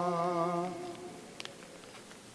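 Sung final note of a church chant, held with a slight vibrato, cutting off under a second in and echoing briefly in the large stone church. A few faint clicks follow in the quiet.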